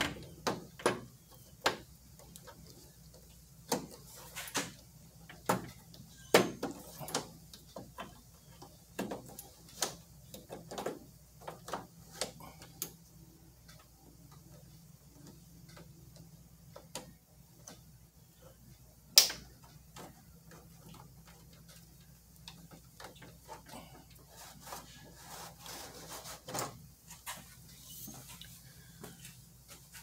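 Clips of an air-cooled VW's inner window weatherstrip being pinched and pressed onto the door's window edge one after another: a run of sharp clicks and snaps with light rubbing. The clicks come thick at first, then sparser, with one loud snap about two-thirds of the way through.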